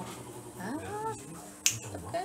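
A single sharp click about one and a half seconds in, the loudest sound here, over a faint steady hum.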